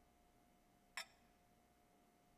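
Near silence with a faint steady hum. About a second in comes a single short metallic clink as a metal chalice is set down on the altar.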